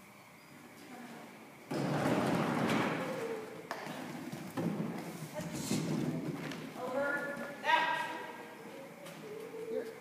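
Running footfalls of a handler and dog on a soft dirt arena floor, coming in suddenly about two seconds in. Around six seconds in there is a thud as the agility teeter (seesaw) plank tips and hits the ground. A woman calls short commands.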